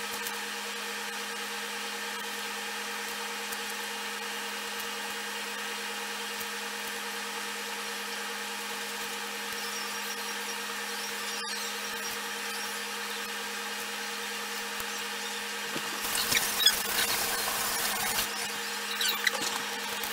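A steady, even hum made of a few fixed tones. About sixteen seconds in, a couple of seconds of louder rustling and crackling handling noise come over it.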